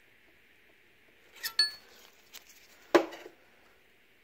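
Metal parts clinking about one and a half seconds in, with a brief ringing tone, then a sharp metallic knock about three seconds in, as steel valve-train parts and the cast-iron head of a disassembled small-block Chevy cylinder head are handled.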